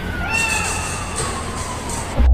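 A cat meowing: one long meow that slides slowly down in pitch, over a steady low rumble.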